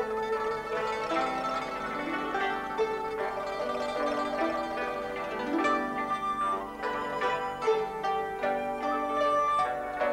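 Background music: a melody of plucked string notes, each struck sharply and left to ring.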